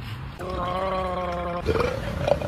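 A man's drawn-out vocal noise made with his mouth wide open, held at one steady pitch for about a second, then breaking into a shorter, rougher sound.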